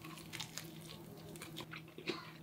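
A person biting into and chewing a crispy air-fried chicken wing in a sauce: faint, small crunches and chewing.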